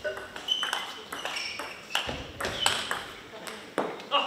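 Table tennis ball being hit back and forth in a rally, a quick run of sharp clicks off the paddles and table, about two to three a second.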